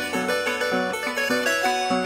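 Andean harp music in Huaraz-style huayno: a quick run of plucked melody notes, with no singing.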